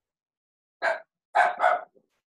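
A dog barking three times: one bark, then two close together about half a second later.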